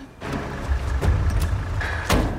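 Movie soundtrack: a car engine running with street noise under background music.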